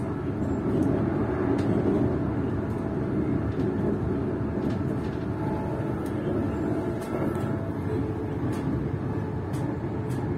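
Steady running rumble of a passenger train at speed, heard from inside the carriage, with faint steady tones above it and a few light clicks.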